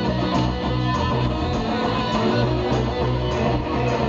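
Live band playing, with guitars to the fore over bass and drums, heard from within the audience.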